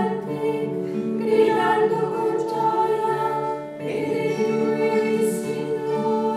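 Choir of Augustinian nuns singing a liturgical chant in held notes, with a short break between phrases about three and a half seconds in.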